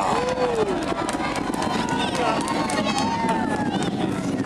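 Space Shuttle Atlantis's launch roar, a continuous crackling rumble, with several spectators' voices calling out and cheering over it.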